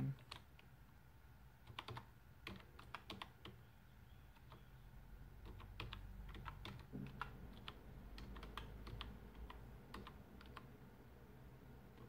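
Typing on a computer keyboard: faint, irregular keystrokes in short quick runs, over a low steady hum.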